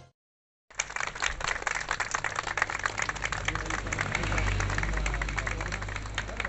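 A small crowd clapping, starting just under a second in after a brief silence and going on steadily, over a low steady rumble.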